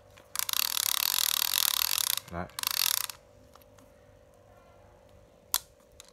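Plastic-bodied size-1000 spinning fishing reel cranked by its handle: a rapid ratcheting clatter of gears and pawl for about two seconds, then a shorter burst after a brief pause. A single sharp click follows near the end.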